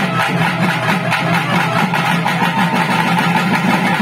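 Loud temple festival music: fast, steady drumming with a held tone over it.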